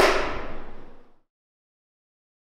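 A single sharp bang at the start that rings out in a reverberant room and fades over about a second, then the sound cuts off abruptly.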